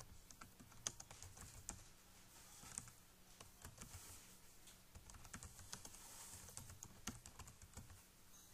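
Computer keyboard typing: a run of faint, irregular keystrokes as a short line of text is entered.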